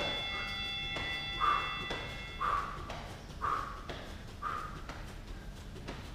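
A gym round-timer bell rings out and fades over the first two and a half seconds, marking the start of a round. Under it a man exercising breathes out hard about once a second, with soft thuds of bare feet on a mat.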